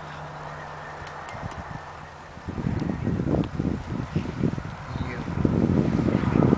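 Wind buffeting the camera microphone in irregular low rumbling gusts. It starts about two and a half seconds in and grows louder near the end.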